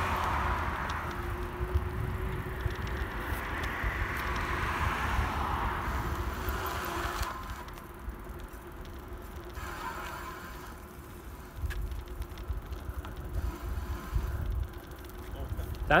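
Wind buffeting the microphone with the rolling noise of a bicycle coasting on a paved path, a steady rushing rumble that eases about seven seconds in.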